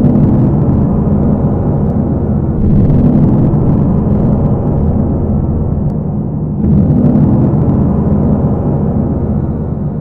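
Loud, low, rumbling drone from the dance score. It swells at the start, again about three seconds in, and again near seven seconds.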